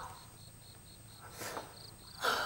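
Faint crickets chirping in a steady rhythm, about four chirps a second. About one and a half seconds in, a woman gives a short sobbing breath.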